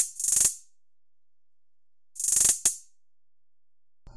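Trap hi-hat sample loop sounding in two short bursts of rapid hi-hat ticks about two seconds apart, with silence between.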